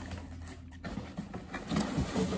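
Faint rustling and light knocks of a corrugated cardboard shipping box being handled as hands reach inside, over a steady low room hum.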